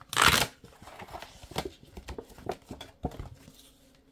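A folded cardboard scratch card being handled and opened out: a loud rustle of card stock in the first half second, then a few short soft taps and rustles of paper.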